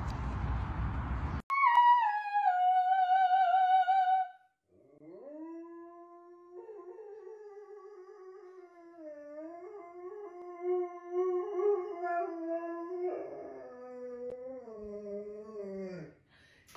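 A small dog howling in long drawn-out howls: first a high howl that drops in pitch and holds for about three seconds, then, after a brief pause, a lower, wavering howl that goes on. Near the end a second, lower howling voice joins in. Before the howling, about a second of wind rush on the microphone ends abruptly.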